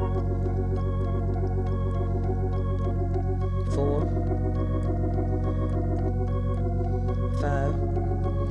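Hammond organ holding sustained G-flat major-seventh suspended chords over a steady G-flat bass note. The right-hand chord changes twice, a little before halfway and near the end.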